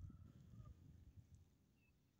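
Near silence: a faint low rumble that fades out about a second and a half in.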